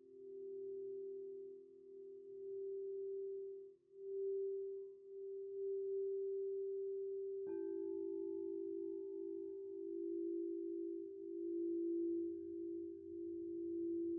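Crystal singing bowls ringing in long, pure tones that pulse slowly. About halfway through a new bowl is struck and its note takes over from the earlier pair.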